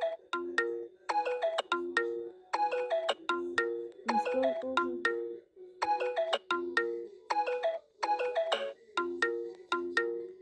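A bright, ringtone-like electronic melody of quick plucked or mallet-like notes. It repeats the same short phrase over and over, with brief gaps between the phrases.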